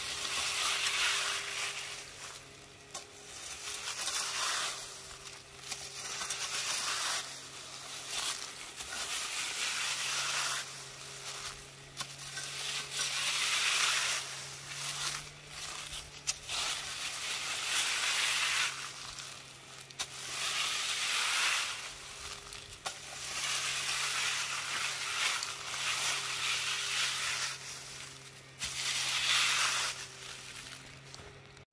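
Dry fallen leaves rustling and crunching in repeated swells a second or two long, over a faint steady low hum.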